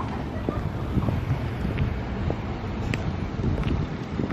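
Wind buffeting the camera microphone, an even low rumble.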